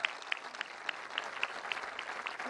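An audience applauding, a steady patter of many hands clapping with a few single claps standing out sharply.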